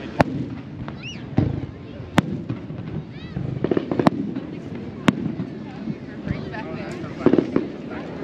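Aerial fireworks shells bursting over the water: a string of sharp bangs at irregular intervals, with quick clusters of pops near the middle and near the end.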